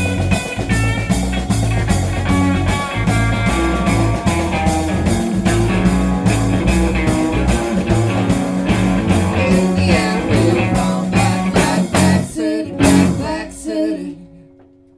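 Live rock band, with drums, bass guitar and electric and acoustic guitars, playing the closing bars of a song over a steady beat. The song ends with a few last hits near the end.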